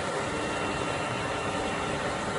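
Steady, even background noise like a ventilation hum or large-hall ambience, with no distinct events.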